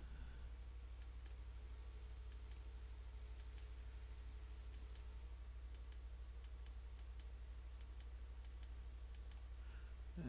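Faint computer mouse clicks at irregular intervals, about one or two a second, as straight lines are drawn point by point, over a steady low electrical hum.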